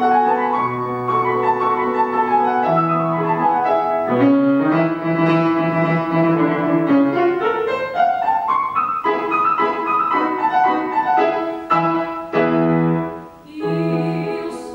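Grand piano playing a classical accompaniment passage of held chords and moving notes, with a short drop in loudness near the end.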